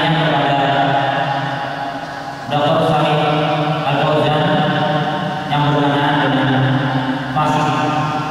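A man's voice chanting Arabic in long, drawn-out phrases held on steady notes, in the melodic style of Quran recitation. A new phrase starts about every two to three seconds.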